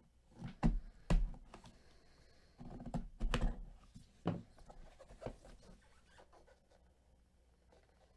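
A cardboard card box being handled with gloved hands: several sharp knocks and a stretch of rubbing and scraping as its security seal is worked at and the box is turned over, the knocks dying away in the last couple of seconds.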